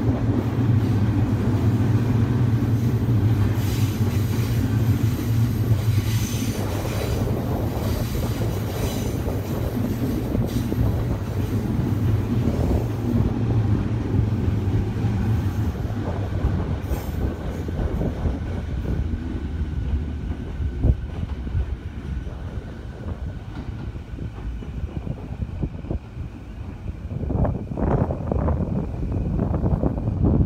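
Electric trains running into a station: a steady low drone through the first half fades away. Near the end the wheels of an approaching E235 series electric train clack over the rails, growing louder as it comes in alongside.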